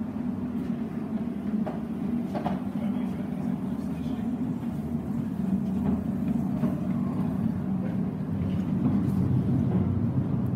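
Steel wheels of a new Alan Keef-built narrow-gauge flat wagon rumbling along the workshop rails as it is pushed by hand, growing louder as it comes closer, with a couple of light knocks about two seconds in.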